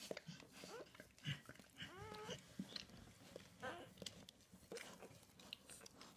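Newborn Labrador puppies squeaking faintly, a short rising squeal about two seconds in and another later, over soft wet clicks of the mother licking and the puppies suckling.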